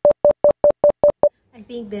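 A rapid run of short electronic beeps, about five a second at one steady pitch, stopping about 1.3 seconds in. A woman starts speaking near the end.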